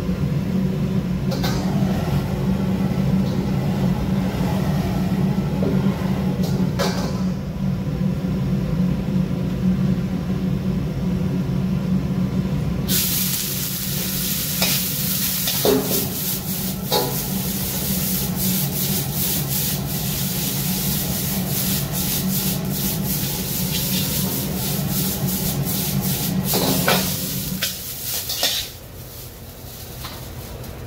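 Gas wok burner running with a steady low rumble under a carbon-steel wok. About 13 seconds in, food hits the hot oil and a loud sizzle starts, with a metal spatula scraping and knocking in the wok. Near the end the burner's rumble drops away.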